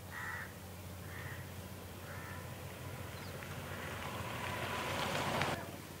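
Crows cawing three times, about a second apart, over a steady low hum. A rush of noise then builds through the second half and cuts off suddenly just before the end.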